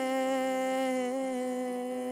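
A woman singing one long held note of a worship song, the pitch wavering slightly near the middle.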